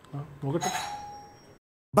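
A brief spoken word, then a single bell-like electronic chime that rings out with a few clear tones and fades over about a second, before the sound cuts off to silence.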